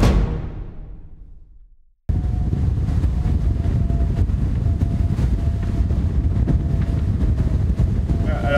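The end of a theme tune fades out over the first two seconds. After a moment of silence comes a steady roar of wind buffeting the microphone and water rushing past the hulls of an Ultim racing trimaran under sail, with a faint steady whistle.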